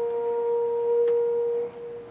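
A school symphonic band holding a single soft, steady note in a pause between brass-led phrases. The note is released about three quarters of the way through and fades out in the hall's reverberation.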